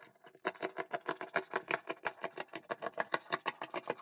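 Fabric scissors snipping through knit sweater fabric in quick, even cuts, about six snips a second, starting about half a second in.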